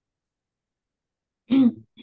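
Silence, then about a second and a half in a person clears their throat once, briefly.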